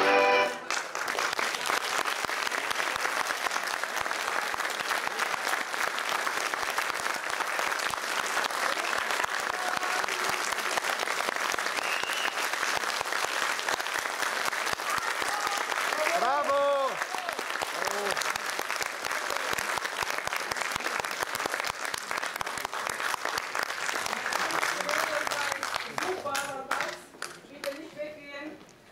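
Audience applauding steadily after the last notes of dance music, with a single voice calling out once partway through; the clapping thins out near the end as a few voices come in.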